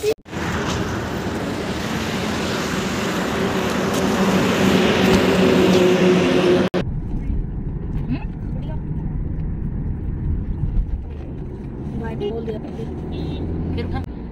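A car driving along a road, heard from inside the car: engine and road noise. For the first several seconds there is a loud rushing noise across the range. After an abrupt break about seven seconds in, it turns into a steadier, duller low rumble.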